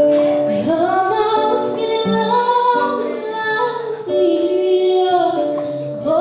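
A young girl singing into a microphone over a boy's acoustic guitar accompaniment, both amplified, in a live cover of a pop ballad.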